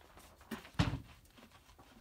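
Two short thumps about a third of a second apart, the second louder and deeper, over faint background.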